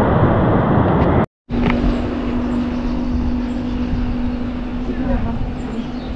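Loud steady rushing of a mountain stream, broken by a brief dropout just over a second in. After the dropout a quieter, steady rushing hiss continues with a low steady hum under it.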